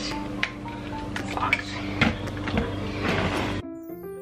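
Background music, with clicks and clinks of toiletry bottles and plastic containers being handled and packed into a plastic storage bin. About three and a half seconds in, the room sound cuts off suddenly, leaving only the music.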